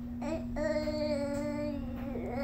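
A baby's voice: a short coo, then one long, steady, sustained coo held for well over a second. A steady hum runs underneath.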